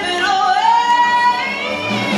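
Female blues singer singing one long high note with a live band behind her, sliding up into the note and holding it for about a second.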